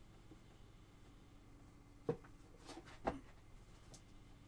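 Quiet room tone with a few faint, brief handling clicks and rustles about two and three seconds in.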